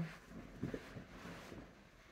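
Faint rustling of a heavy fur coat as it is pulled on over the shoulders and settled into place, dying away after about a second and a half.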